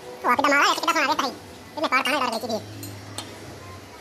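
A high-pitched person's voice in two short phrases with a strongly wavering pitch.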